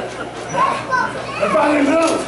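Raised voices of people calling out, set high in pitch, in short phrases that the recogniser did not catch.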